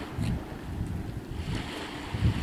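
Wind buffeting the microphone: an uneven low rumble that rises and falls, over a faint hiss of open air by the sea.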